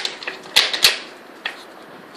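Wooden dog puzzle toy clacking as a dog noses at its sliding blocks: a few sharp clacks in the first second, then one softer clack about halfway through.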